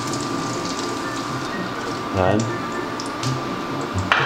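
Hot cooking oil left in an empty frying pan on an induction cooker, sizzling and crackling steadily with small spits, over a thin steady high tone.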